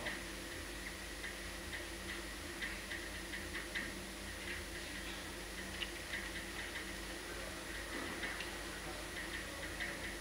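Whiteboard marker writing on a whiteboard: faint, irregular small squeaks and taps of the felt tip on the board, over a steady low room hum.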